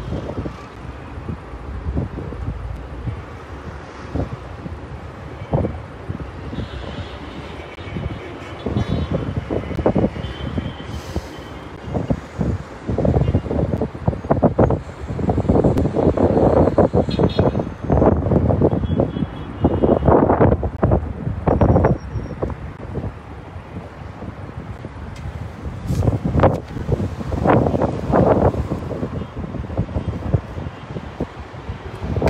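Outdoor street noise: traffic and wind rumbling on a phone's microphone, swelling in gusts that are strongest in the middle and again near the end.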